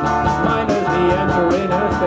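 Live rock band playing: a male voice singing over guitar, with a steady beat of about four to five strokes a second.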